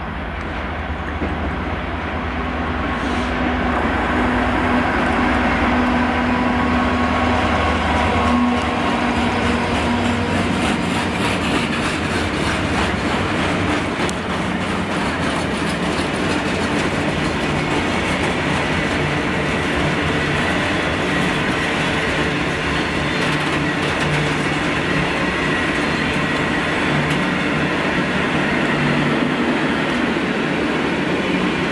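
Class 66 diesel locomotive's two-stroke engine running as it approaches, growing louder over the first few seconds. A long rake of freight wagons then rolls steadily past, wheels running on the rails.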